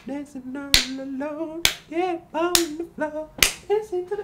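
A voice singing a bouncy melody, punctuated by sharp snaps that keep a steady beat, four of them, a little under a second apart.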